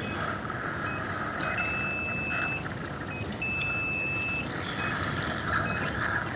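Operating-room patient monitor beeping: short high beeps about every three-quarters of a second, twice held as a longer tone of about a second. A steady hiss runs underneath.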